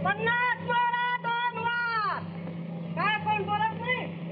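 A man's voice calling out in two long, drawn-out, high-pitched cries. The first slides down in pitch at its end about two seconds in, and the second starts about a second later. A steady low hum from an old film soundtrack runs underneath.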